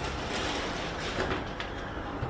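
Steady rustling and handling noise, with no distinct knocks or clicks.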